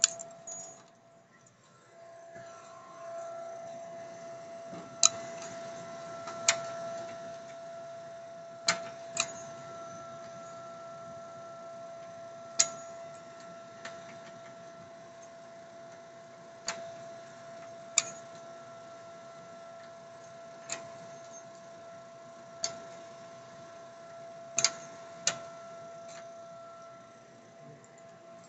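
A steady high-pitched hum, joined by sharp clicks and knocks about a dozen times at uneven intervals.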